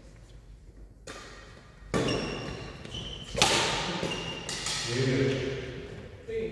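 Badminton rally on a wooden sports-hall floor: a few sharp racket-on-shuttlecock hits, echoing in the hall, the loudest about three and a half seconds in, with brief high shoe squeaks between them. A man's voice speaks briefly near the end.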